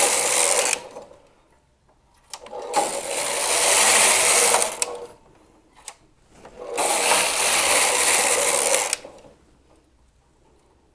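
Singer knitting machine carriage pushed across the needle bed, knitting a row at each pass: three passes of about two seconds each. A few single sharp clicks fall in the pauses between passes.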